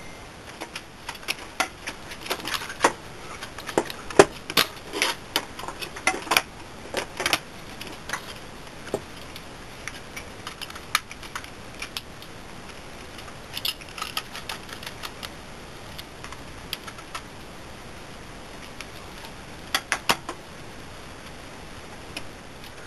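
Clicks, taps and light knocks of plastic and sheet-metal parts being handled and pried apart as a video projector is taken apart by hand. They come thick and irregular over the first eight seconds, then only a few scattered clicks, with a short cluster near the end.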